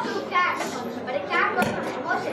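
Children speaking lines of dialogue through headset microphones.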